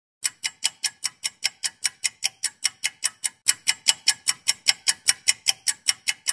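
Rapid, even ticking: sharp, bright clicks about five a second, a little louder from about halfway through.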